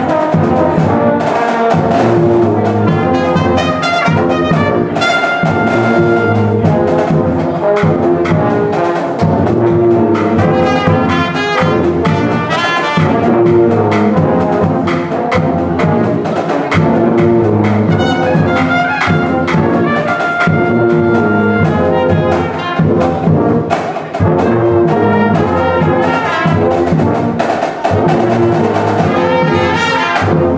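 Drum and bugle corps playing a tune: a line of G bugles, from soprano bugles up front to large contrabass bugles, with bass drum and percussion underneath.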